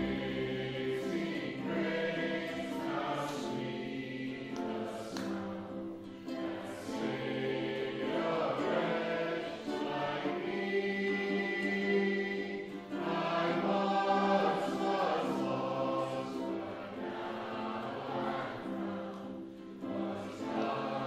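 Live worship music: several voices singing together with plucked acoustic string accompaniment.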